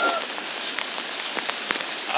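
The tail end of a rooster's crow, cut off just after the start. Then a steady hiss of water with a few sharp clicks scattered through it.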